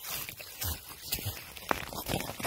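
Close, irregular rustling and scraping of a jacket sleeve, snow and frozen soil while a mushroom is dug out by hand, with one sharp click near the end.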